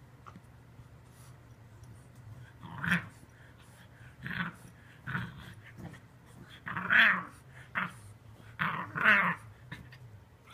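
English bulldog growling in a series of short bursts while wrestling with its bed, starting about three seconds in.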